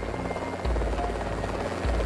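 Propeller-plane engine sound effect, a fast fluttering buzz, laid over background music with a steady bass beat.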